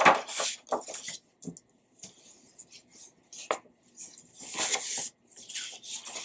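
Scissors cutting through brown paper around a traced handprint: irregular snips with the paper rustling, and a longer stretch of rustling about two-thirds of the way through.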